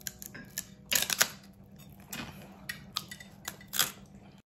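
Crispy roast-pork (lechon) skin being bitten and chewed close to the microphone: a run of sharp crunches, loudest about a second in, with single crunches near the middle and the end.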